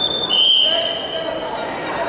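Referee's whistle: a steady high note held for about a second, starting just after the start, with the voices and chatter of a sports hall behind it.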